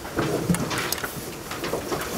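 Paper sheets rustling as they are handled and turned, with scattered small clicks and knocks.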